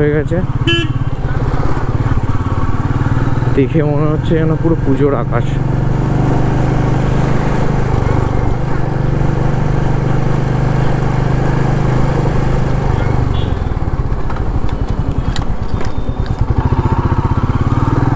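Royal Enfield Meteor 350's single-cylinder engine running under way, heard from the rider's seat. Its steady low note falls away about three-quarters of the way through.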